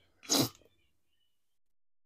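A single short, breathy burst of a person's breath or voice, lasting about a third of a second, starting a quarter of a second in.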